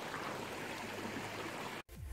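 Creek water running steadily over rocks, cutting off suddenly near the end.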